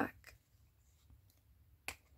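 Faint handling of small metal keychain hardware, ending in a single sharp click near the end as pliers squeeze a jump ring closed.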